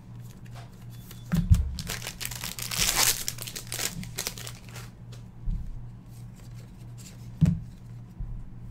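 Foil trading-card pack wrapper being torn open and crinkled in the hands, crackling most densely in the middle. There are two low thumps, one about a second and a half in and one near the end, over a steady low hum.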